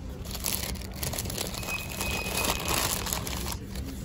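Paper rustling and crinkling as a brown paper takeaway bag and the paper wrapper of a sandwich are handled. The crinkling goes on almost without a break and stops shortly before the end.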